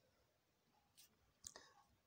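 Near silence: room tone, with two faint short clicks, one about a second in and a slightly louder one about a second and a half in.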